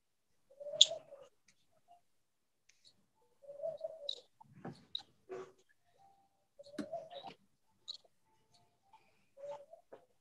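A dove cooing faintly: four short, low coos about three seconds apart, with faint clicks in between.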